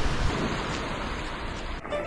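Steady outdoor noise of wind and water at the seashore. Electronic music starts just before the end.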